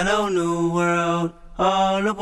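A solo voice singing long, held notes in two phrases, the second starting about one and a half seconds in.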